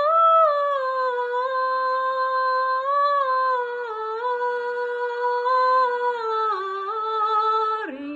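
A young woman singing unaccompanied, one long phrase of held notes on an open vowel. The notes step gently up and down and dip lower near the end.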